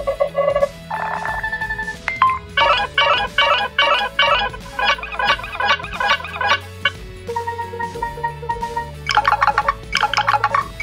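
Nothing Phone 2a ringtone playing from the phone's speaker: a short electronic melody of bright, struck-sounding notes. It starts with a few notes, breaks into a quick run of about three notes a second, holds a few steady tones, and ends in a dense flurry of notes.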